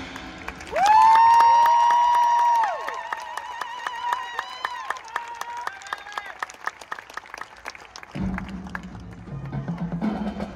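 Marching band music: a high note swoops up and is held for about two seconds, then soft held tones sound under scattered audience clapping. A low chord comes in near the end.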